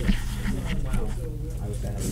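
Untranscribed background chatter of several voices in a room, over a steady low hum.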